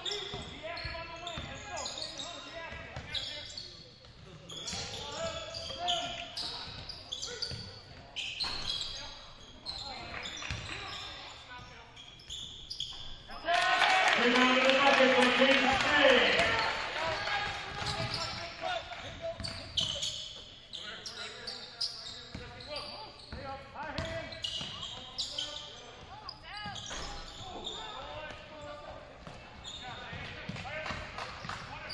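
Basketball being dribbled on a hardwood gym floor during play, with players' and spectators' voices echoing in the gym. About halfway through, loud voices shout for a few seconds.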